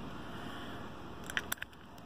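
Low steady room hum, then a few light clicks and knocks about a second and a half in as the camera phone is picked up and turned around.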